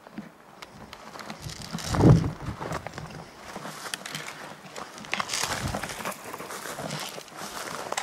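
Pine branches and dry twigs rustling and crackling as someone pushes through dense undergrowth, with a louder thump about two seconds in.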